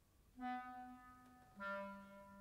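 Clarinet playing two separate sustained notes, the second a little lower than the first, each with a clear start and a slow fade, in a quiet, sparse passage of chamber music.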